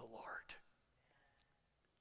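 A spoken word in the first half second, then near silence: room tone.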